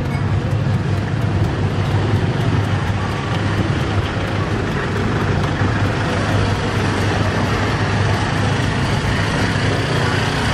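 Steady rumble of road traffic, with light, quick knife taps as a peeled green papaya is hacked into shreds for som tum.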